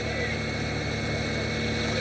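Steady drone of a motor vehicle's engine with a wash of wind and road noise, as heard on a live road-race broadcast's ambient sound.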